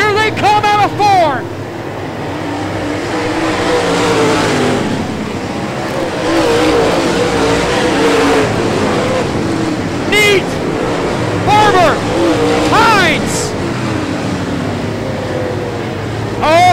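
A pack of super late model dirt-track race cars running flat out, their V8 engines droning together with pitch that wavers up and down as they race through the turn.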